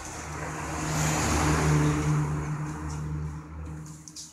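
A vehicle passing by: a low engine hum and rushing noise that swells to a peak about two seconds in, then fades away.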